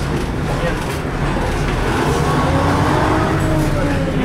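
Inside the cab of a LAZ-695T trolleybus: the electric traction drive whines as the vehicle gathers speed, its pitch rising from about a second and a half in and easing slightly near the end, over a steady low rumble of the moving trolleybus.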